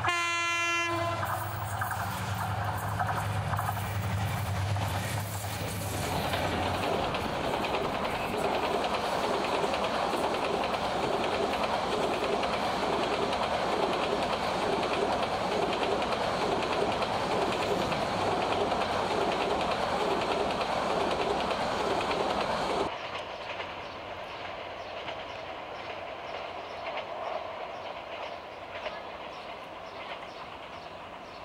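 A diesel locomotive sounds its horn briefly at the start, then its engine drones as it approaches. A passenger train then passes close at speed, its wheels clicking over the rail joints in a steady rhythm. Near the end the sound cuts abruptly to a quieter, more distant train rumble.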